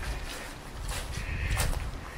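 Footsteps crunching through dry fallen leaves, with low rumble on the microphone. A short, high-pitched cry of unknown source is held for about half a second, a little past the middle.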